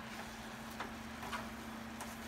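Spatula stirring shredded cabbage and ground sausage in a wok: three faint scrapes or taps over a low steady hum.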